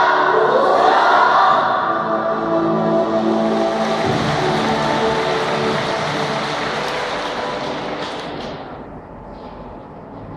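Choral music, a choir singing with musical backing, loud at first and fading down near the end.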